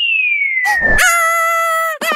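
Cartoon sound effects: a whistle falling steadily in pitch as a thrown baseball flies through the air, a brief low sound about a second in, then a long steady high-pitched wail.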